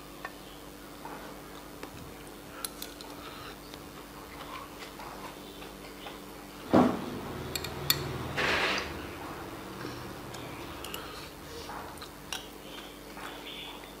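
Steel spoon clicking and scraping lightly against a ceramic rice bowl as stir-fry and rice are scooped. There is a louder knock about seven seconds in, followed a second later by a short hissing noise.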